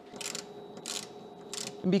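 Heavy battery cables being handled: three short scraping rustles about a second apart as the thick insulated cable is pulled and slid into place, with a faint steady hum under them.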